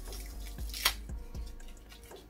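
Small crinkles and clicks of a plastic wrapper being picked and peeled off a mascara tube by the fingers, with one sharper crackle just before the middle.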